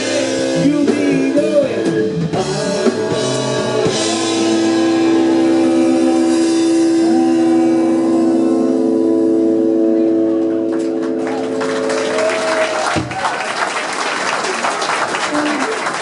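Live rock band with saxophones and drums ending a song: a few seconds of full-band playing, then a long sustained final chord held for about nine seconds that cuts off sharply. The audience then applauds and cheers.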